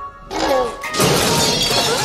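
Dramatic film-soundtrack sound effects: a short gliding cry, then a sudden loud crash like shattering and clattering from about a second in, over music.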